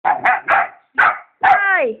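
A dog barking loudly: four short barks, then a longer bark that slides down in pitch near the end.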